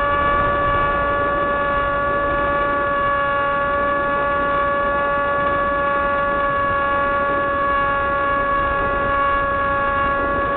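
Small RC airplane's motor and propeller running at a steady high-pitched whine, heard through the onboard FPV camera, with wind rush underneath.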